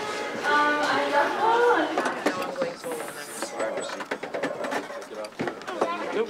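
Indistinct voices for about the first two seconds, then scattered light clicks and knocks against a low background of shop chatter.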